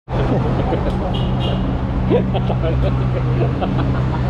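Street ambience: a vehicle engine running with a steady low hum close by, with people talking in the background.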